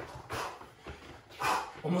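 Hard, quick breathing and sneaker scuffs on a tile floor from a man doing fast side-to-side shuffles: short noisy puffs, roughly half a second apart.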